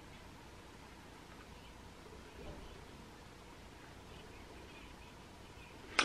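Faint room tone: a low, even background hiss in a quiet room, with no clear sound event.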